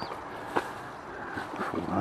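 Outdoor ambience while walking: a steady rushing noise, with a faint short high bird chirp at the start and a single sharp tap about half a second in.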